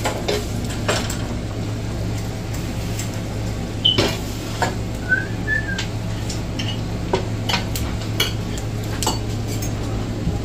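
Metal serving utensils clinking and scraping against a pan and a plate as spaghetti is served, a scatter of light clicks, the sharpest about four seconds in. A few brief high chirps sound around the middle, over a steady low hum.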